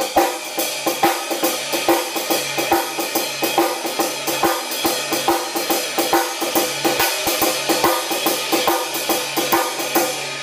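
Ride cymbal and snare drum played together in a blues shuffle at about four strokes a second, the snare taking a rim shot on the first beat of every second bar.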